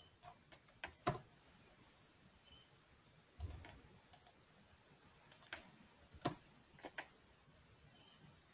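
Faint, scattered clicks of computer keyboard keys and a mouse, about a dozen separate strokes with pauses between them, as a price is typed into a form and entered.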